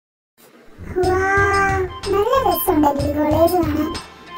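After a brief silence, a high voice holds one long note, then slides up and down in pitch, over background music.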